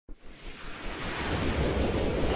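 Rushing whoosh sound effect of an animated logo intro, swelling in loudness, with a rising sweep beginning near the end.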